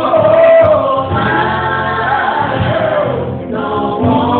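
Live gospel group singing together, several voices joined in harmony.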